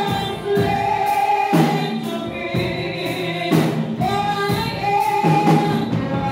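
Gospel singing: a woman's voice leading on microphone with other voices joining, holding long notes over a steady beat of about one stroke a second.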